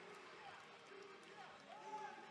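Near silence: faint venue room tone with a distant murmur of voices.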